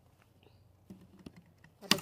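A scatter of short, light clicks and taps, ending in a sharper click just as a woman begins to speak.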